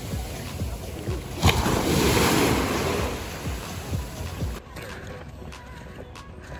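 Small waves washing up onto a sandy beach and drawing back, with a louder surge about a second and a half in. The surf stops abruptly about four and a half seconds in.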